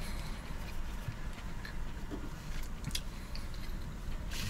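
Quiet chewing of a mouthful of crispy-breaded chicken burger, a few faint ticks over a steady low hum inside a car cabin.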